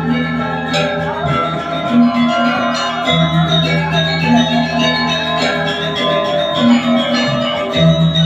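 Balinese gamelan playing: bronze metallophones and gongs ringing in dense interlocking lines over a low note figure that comes back about every two seconds.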